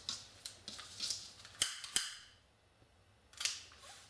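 Two sharp clicks about half a second apart near the middle, typical of a utility lighter's igniter being pressed to heat seal a ribbon end, among softer handling sounds.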